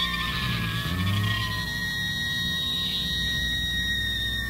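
Sustained electric guitar feedback on a hardcore punk demo recording. Several high whining tones hold steady and waver, with a slide down in pitch about a second in, over a low bass rumble with a bending note.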